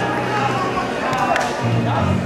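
Arena ambience in a large hall: background music and scattered voices over a steady low hum, with one sharp tick about two-thirds of the way through.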